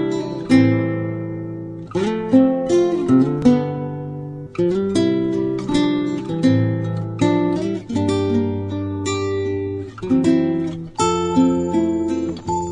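Acoustic guitar music: picked notes and chords, each ringing out and fading before the next.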